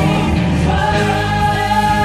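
Live gospel choir singing in harmony through microphones and a PA. A new chord comes in under a second in and is held as long sustained notes over a steady low bass.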